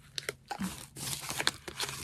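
Irregular crinkling, rustling and small clicks of a doll's garment bag and its tiny hanger being handled and pulled apart by hand.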